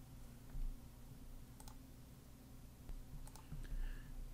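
A few faint, scattered computer clicks over a steady low electrical hum.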